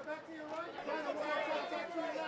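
Several voices talking and calling out over one another: the chatter of red-carpet photographers.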